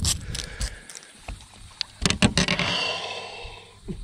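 Sharp knocks and clatter of a baitcasting rod and reel being handled and laid down on a boat's carpeted deck, a few near the start and a cluster about two seconds in, followed by a short scraping hiss.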